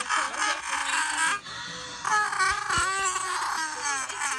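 A high-pitched voice making drawn-out, wavering sounds, in two stretches with a short quieter gap in the middle.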